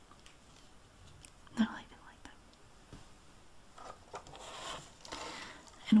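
Soft rustling of shiny shredded packing filler as fingers dig into it for the next item, in the second half, after a few faint taps and a short breathy sound about a second and a half in.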